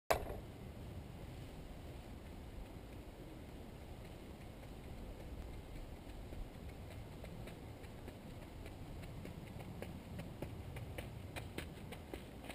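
A runner's footsteps on a dirt path, faint at first and growing louder and more frequent as she approaches over the last few seconds, over a steady low rumble.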